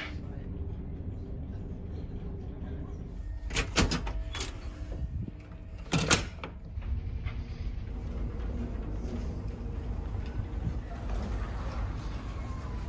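Steady low rumble of a ferry underway, the MV Hrossey's engines and hull droning, broken by two short bursts of sharp clacks and knocks about four and six seconds in.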